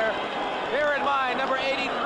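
Speech: a male television sports commentator talking.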